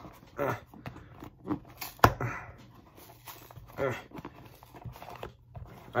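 Strained grunts and breaths of effort while fingers pull hard at the taped flap of a cardboard mailing box, with one sharp snap of the cardboard about two seconds in, the loudest sound.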